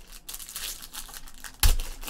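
Foil wrapper of a trading-card pack crinkling as it is torn open and pulled apart, with one sharp knock about one and a half seconds in.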